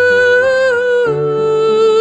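Woman singing long sustained notes in a song cover, the held pitch stepping down slightly about a second in, over soft sustained backing accompaniment.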